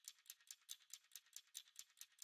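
Faint background music: a light, high ticking rhythm, like a shaker, about five beats a second.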